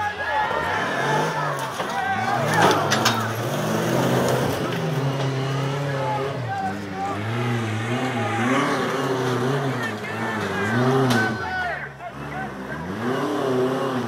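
Off-road race buggy's engine revving hard under load, its pitch rising and falling repeatedly as it claws up a steep dirt climb, with a few sharp knocks about three seconds in and a brief drop in revs near the end.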